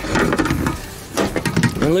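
A spirit level knocking and scraping against a car's windshield glass and cowl as it is set in place. There is a run of short clatters at first and another after about a second.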